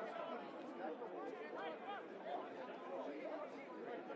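Chatter of several people talking over each other at once, no single voice standing out.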